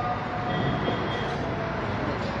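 Steady low rumbling background noise of a crowded hall, with no clear voice or tune standing out.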